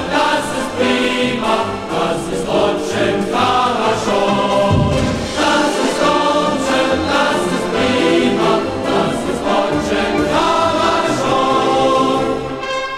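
Music: a choir singing a march-style song over instrumental backing.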